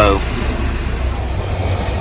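Low steady rumble of a car heard from inside the cabin, weakening about a second and a half in.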